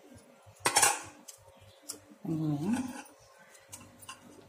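A steel spoon clinks against a steel bowl a little under a second in, with smaller ticks of utensils afterwards, while puris are filled with mashed potato. Around the middle comes a brief voice-like sound that rises in pitch.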